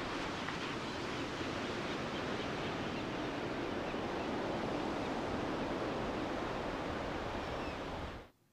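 Ocean surf washing steadily, an even rush of breaking waves with no music or voice over it.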